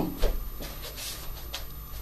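Quiet room tone with a low hum and a few faint, soft scuffs.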